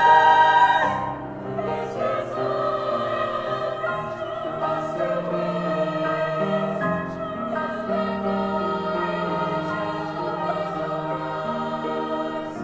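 A treble choir of women's voices singing a contemporary choral piece in parts. A loud held chord releases about a second in, then the choir goes on more softly with long sustained notes.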